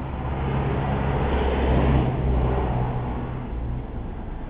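A motor vehicle passing on the road over a steady low engine hum, growing louder to a peak about two seconds in and then fading.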